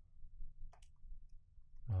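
A few sparse clicks of a computer mouse, the two sharpest a little under a second in, over faint room hum.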